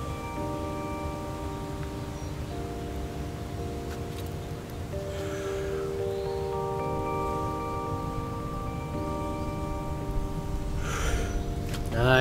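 Background music of held, chime-like tones, with the chord changing every second or two.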